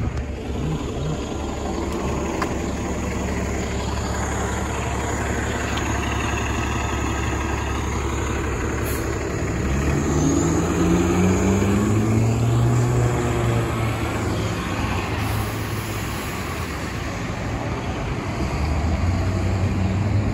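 A 2015 Nova LFS city bus pulls away from a stop, its engine note rising in steps as it accelerates about ten seconds in, over a steady rumble of street traffic.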